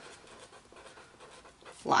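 Marker writing on a paper worksheet: faint, irregular scratchy strokes.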